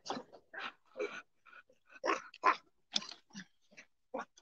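Several dogs crowding close, making a string of short, irregular sounds, about a dozen in four seconds.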